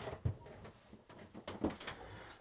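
Faint movement noise in a small room: a few soft knocks and scuffs, the clearest just after the start and again near the end.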